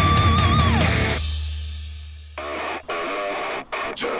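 Heavy metal music with distorted electric guitar: a high held note bends and drops away about a second in over a low note that slowly fades, then a chugging riff comes in and cuts off abruptly twice.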